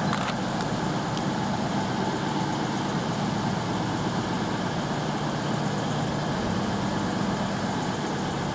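CrossCountry Class 221 Super Voyager diesel-electric multiple unit pulling slowly away, its underfloor diesel engines running steadily with a low hum. A few faint clicks come in the first second or so.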